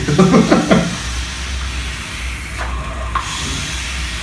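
Steady hiss of two vape mods being drawn on: air pulled through the atomizers while the coils vaporize e-liquid, with a low hum underneath.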